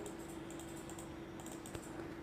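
Faint, scattered clicks of a computer mouse as vertices of a line are placed on screen, over a steady low hum.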